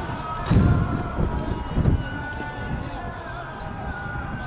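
Outdoor ambience of a football pitch: distant voices calling, with two heavy low thumps about half a second and two seconds in.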